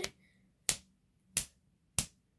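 A black strap snapped taut between the hands, giving sharp cracks at a steady pace of about one every two-thirds of a second.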